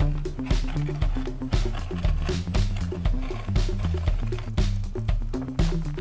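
Background music with a steady beat of about two strokes a second over a moving bass line.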